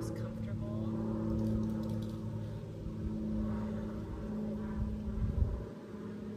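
A steady low motor hum, like an engine running, with faint voices in the background.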